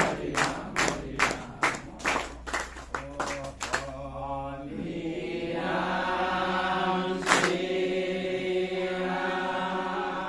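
A group of men in Assamese devotional naam chanting, singing together while clapping their hands in time, about two and a half claps a second. About four seconds in the clapping stops and the voices hold a long drawn-out chant. A single clap comes later.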